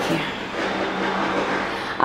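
A steady rushing noise with a low hum underneath, which cuts off abruptly at the end.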